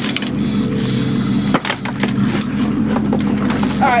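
A fishing boat's engine running with a steady low hum under wind and water noise, with a couple of sharp knocks about a second and a half in.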